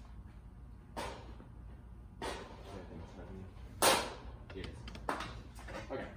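A few irregular knocks and thuds, the loudest about four seconds in, as hollow plastic game balls are handled and gathered on a foam-tiled robotics field.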